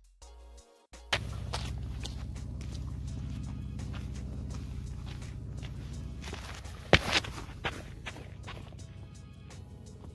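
Footsteps crunching on a dirt trail over background music, coming in about a second in with a low steady rumble under them. The steps fall irregularly, with one sharp knock about seven seconds in.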